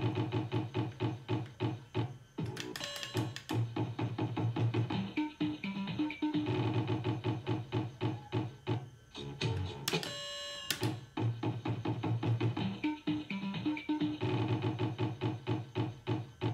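Estrella del Metro fruit slot machine playing its electronic game music while a spin runs: a quick, even string of synthesized beeps, about three or four a second, over a low pulse, with a brief buzzing tone about ten seconds in.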